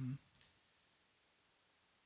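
Near silence: room tone right after a man's brief spoken 'um', broken by one faint short click about a third of a second in.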